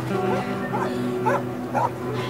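A young woman crying in short, high whimpering sobs, about two a second, over sustained music chords.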